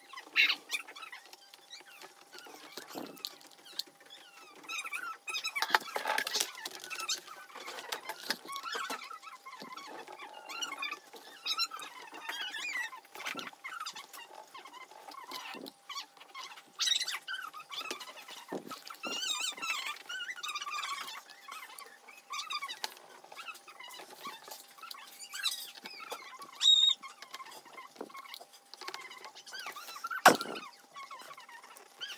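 Hands prying at and handling the plastic base of a laptop opened for a drive swap: irregular clicks, scrapes and rustles of plastic, some sharper snaps, over a faint steady high tone.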